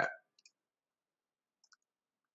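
The tail of a man's spoken word, then near silence broken by a few faint, short clicks: two about half a second in and another near the end.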